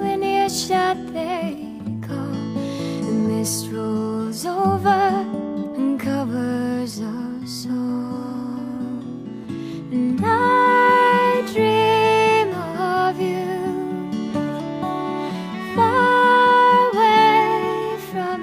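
Slow, gentle contemporary Irish folk music: acoustic guitar under a long-held, wavering melody line, swelling fuller about ten seconds in and again near the end.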